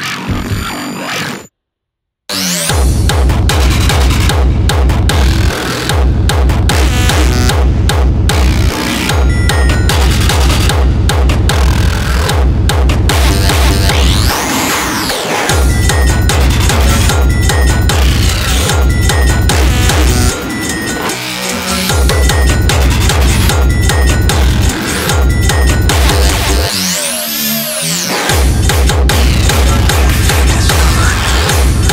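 Hardstyle electronic music: after a moment of silence about two seconds in, a heavy kick drum drives a steady beat under synths, with the kick dropping out briefly twice in the second half while a synth sweep rises and falls.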